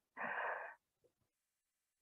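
A woman's single short breath, about half a second long, with no voice in it.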